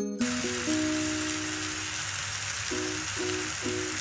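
Marinated chicken pieces sizzling as they fry in a little olive oil in a nonstick pan: a steady, hissing sizzle that starts suddenly just after the start. Background music plays alongside.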